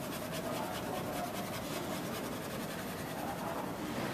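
Small paintbrush dabbing and scratching on a canvas with oil paint, a run of faint quick strokes over steady room noise.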